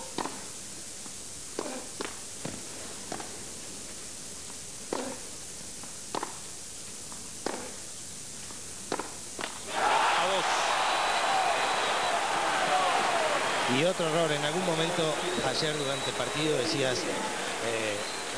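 Tennis rally: racket strikes on the ball about once a second, a dozen or so hits, ending about nine and a half seconds in. Then a stadium crowd bursts into loud cheering for the won point, turning into chanting voices about four seconds later.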